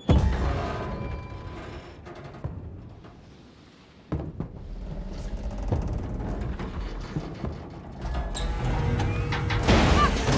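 Dramatic film score with sudden loud hits: a heavy hit at the start that fades away, another about four seconds in, then the music and crashing impacts build louder near the end.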